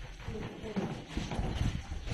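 Footsteps of several people walking along a hard corridor floor, irregular knocks mostly in the second half, with faint voices behind them.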